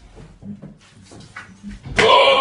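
Goats at close quarters making a few short, soft low grunts, with a dull thud near the end.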